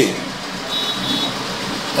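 A pause in speech filled by steady background noise, with a faint high-pitched beep about a second in.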